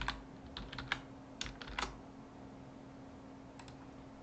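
Computer keyboard typing: a quick run of about ten keystrokes over the first two seconds, then two more clicks near the end, over a faint steady hum.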